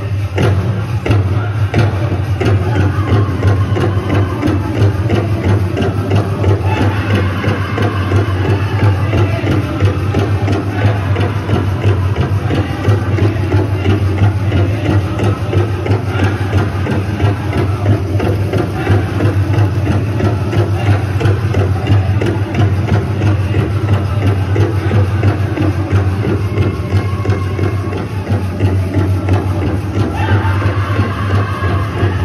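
Powwow drum group singing a jingle dress contest song over a fast, steady beat on a big drum, with the metal cones of the jingle dresses rattling as the dancers move.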